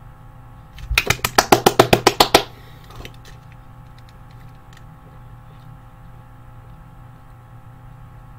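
A quick run of about a dozen sharp slaps close to the microphone, about eight a second for just over a second, starting about a second in. It is the kind of sound made by excited hand claps or drumming on a desk.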